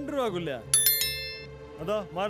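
A single bright metallic clink about three-quarters of a second in, ringing on for under a second before fading, over a steady low background tone.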